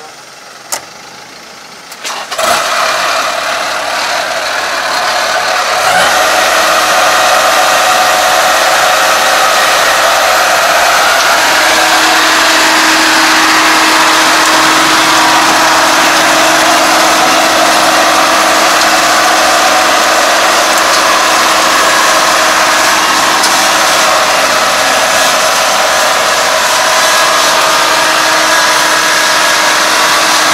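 Kubota ARN460 combine harvester's diesel engine starting about two seconds in, after a single click. It climbs to a loud steady run by about six seconds as the combine drives down the loading ramps off the truck, and a steady hum joins at about eleven seconds.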